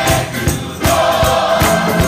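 Gospel choir singing in full voice with band accompaniment, over a steady, even beat.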